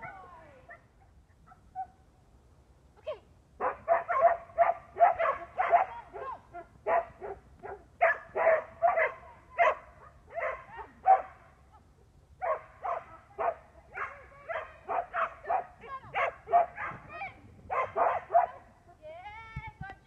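A dog barking in fast strings of short barks, about three or four a second with brief pauses, starting a few seconds in and stopping near the end. These are the barks of a dog running an agility course.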